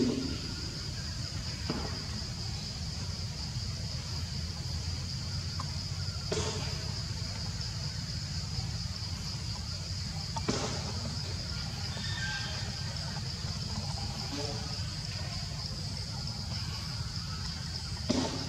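Steady outdoor ambience: a constant high-pitched drone with a low rumble beneath it, and a few faint clicks or snaps scattered through.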